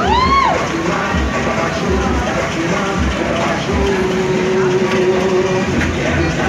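Loud pop music with a steady beat, and crowd noise under it. A short pitched whoop rises and falls right at the start, and a held note sounds for about two seconds in the middle.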